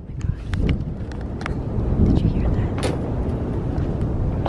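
Wind buffeting the camera's microphone outdoors: an uneven low rumble that rises and falls in gusts, with a few small clicks from the camera being handled.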